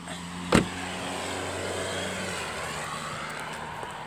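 A sharp knock about half a second in, then the steady noise of a car on the road, swelling slightly and easing off as it goes by.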